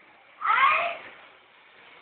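A single meow-like call about half a second long, its pitch bending downward.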